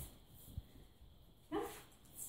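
A young Cavalier King Charles spaniel × West Highland terrier puppy gives one short bark about a second and a half in.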